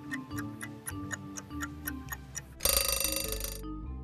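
Quiz countdown timer sound effect: quick, regular clock ticks over a simple low melody. About two and a half seconds in, a loud alarm-clock bell rings for about a second as the countdown runs out.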